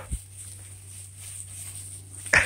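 A quiet pause holding a steady low hum, with one soft thump just after the start.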